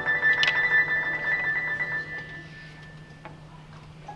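Solo upright piano playing a fast run of quick, evenly repeated high notes for about two seconds, then a pause as the last notes fade away.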